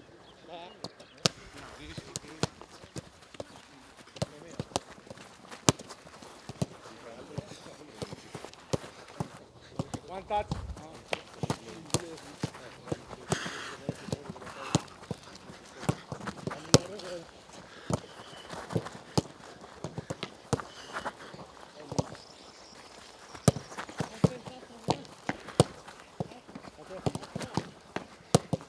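Footballs being kicked on a grass training pitch: irregular sharp knocks of boots striking balls, at times several a second, mixed with running footsteps and a few short shouts from players.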